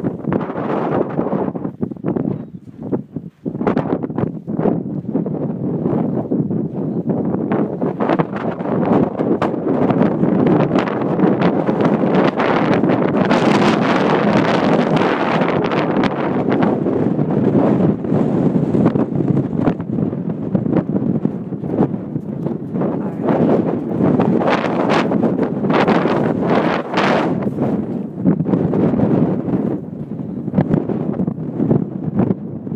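Wind buffeting the phone's microphone: a loud, rumbling rush that swells and eases in gusts, with a brief lull about three seconds in.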